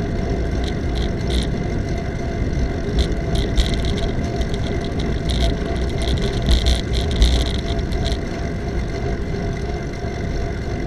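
Riding noise from a bicycle on a paved path: steady wind rush and road rumble on the camera's microphone, with scattered light rattling clicks. A few louder bumps and rattles come about six to seven seconds in, as the bike crosses an intersection.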